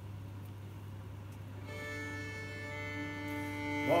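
A low steady hum, then about halfway in a fiddle starts long bowed notes, held and moving to a new note near the end, as a man's singing voice comes in at the very end.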